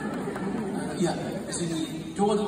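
Speech: a man talking into a handheld microphone, with chatter from the audience.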